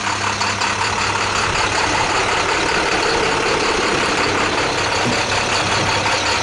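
Diesel engine of a 2011 International 4300 truck idling steadily.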